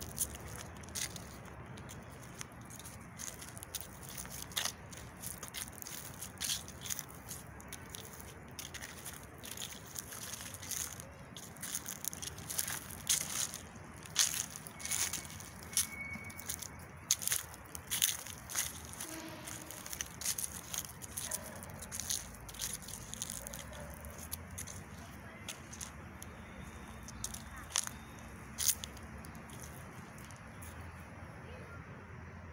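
Footsteps on dry leaf litter: irregular crackling and crunching over a low, steady outdoor background.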